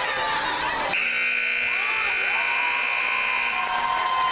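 Ice rink scoreboard buzzer sounding one steady, high-pitched tone for about two and a half seconds, starting about a second in and cutting off near the end, marking the end of the game. Crowd voices carry on underneath.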